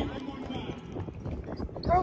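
Dogs' paws scuffling and pattering on loose gravel, a run of light, quick steps.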